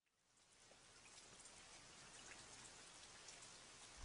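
Near silence: a faint, even crackling hiss fades in about half a second in and slowly grows louder.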